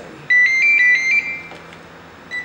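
Mobile phone ringtone: a short melody of high electronic notes that starts about a third of a second in, plays for about a second, then fades.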